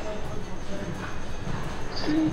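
Faint, indistinct voices over low background noise, with no distinct event standing out.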